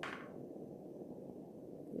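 Handheld kitchen blowtorch flame burning steadily with a faint, low rushing as it browns meringue.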